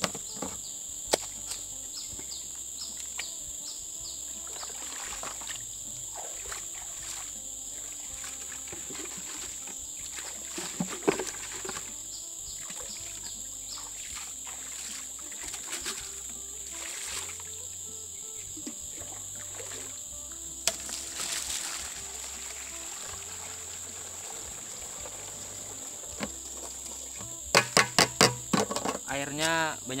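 Water scooped from a puddle with a small bucket and poured into a plastic manual backpack sprayer tank to mix herbicide, with splashes and pours, and a quick run of sharp knocks near the end. A steady high insect drone runs underneath.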